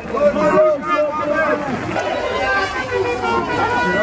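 Crowd of protesters chanting and shouting, many voices overlapping. In the second half the chant breaks up into a babble of voices, with a steady high-pitched tone held underneath.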